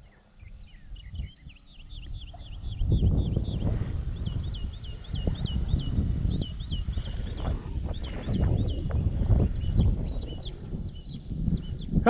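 A bird calling over and over in short, high chirps, two or three a second. From about three seconds in, an uneven low rumbling noise, louder than the chirps, runs underneath.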